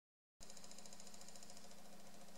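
Faint, steady mechanical hum of a small DC motor used as a vibration driver, rocked back and forth by a 14 Hz alternating voltage from a function generator to shake a rubber band into its fundamental standing wave. The hum starts abruptly less than half a second in, after silence.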